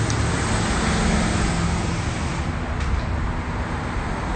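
Steady road traffic noise with a low, even engine hum underneath, picked up by a phone's microphone.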